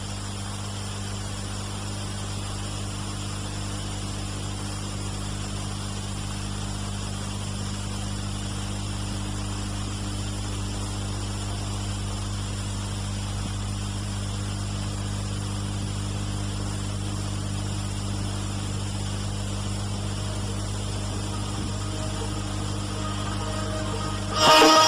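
Steady electrical mains hum with its overtones and a constant hiss. It holds level and unchanging, with no rhythm or events.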